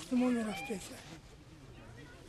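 A man speaking in a pitched voice, ending on a long drawn-out syllable, then a pause of about a second.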